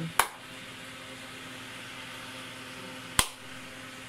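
Two sharp hand claps about three seconds apart, each a clap signal for a sound-activated LED crystal-ball light to change colour. A steady faint hum runs underneath.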